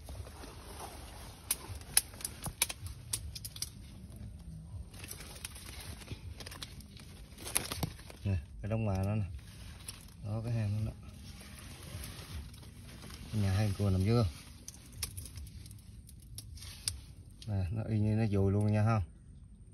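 Scattered sharp clicks and crackles of twigs, dead leaves and wet mud being handled among mangrove roots while a crab burrow is dug open. The clicks come thickest in the first few seconds and again about halfway through.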